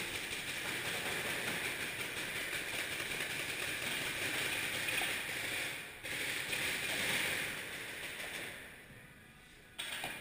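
Paintball markers firing in long rapid strings, a dense rattle echoing through a large indoor arena. It stops briefly and starts again abruptly about six seconds in, then dies away, and a new burst starts suddenly near the end.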